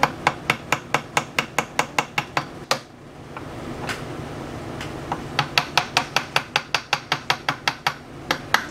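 Quick, light taps on a bench chisel, driving it along a wooden block to pare off a shaving: about five sharp taps a second, a pause of two seconds or so in the middle, then a second run of taps.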